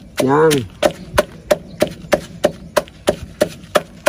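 A knife chopping food on a wooden board with steady sharp knocks, about three a second.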